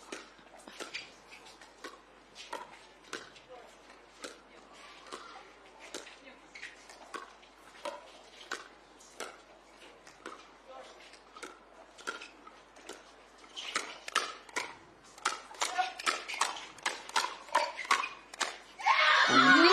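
Pickleball paddles striking the plastic ball in a long rally of soft dinks, sharp pops at irregular spacing. From about three-quarters of the way in they come faster and louder in a quick volley exchange at the net.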